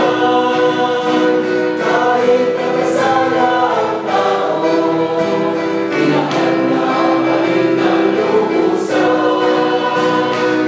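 Small mixed choir of women's and men's voices singing a hymn in harmony, with long held chords that change every two or three seconds.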